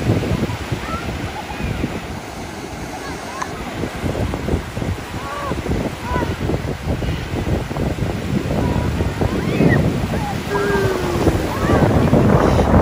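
Ocean surf breaking and washing around the shallows, with wind buffeting the microphone, and scattered short shouts and voices from people in the water.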